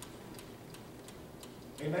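Faint, steady ticking, evenly spaced at a little under three ticks a second, over quiet room tone. A man's voice comes back in near the end.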